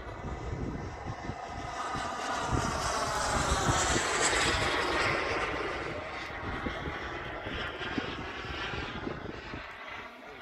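AirWorld BAE Hawk radio-controlled model jet flying past with its engine whining: the pitch bends as it passes, loudest about four seconds in, then fading away. Wind buffets the microphone underneath.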